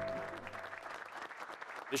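A small crowd clapping by hand, scattered and moderate, as the last held notes of background music fade out in the first second.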